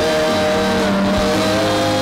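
Live worship band music with long held notes that slide slightly in pitch, over low bass notes that come in about a second in.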